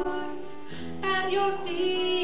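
A woman sings a slow worship song into a microphone, with acoustic guitar accompaniment. She holds long notes and briefly drops back just before the middle, then starts a new phrase over a low guitar note.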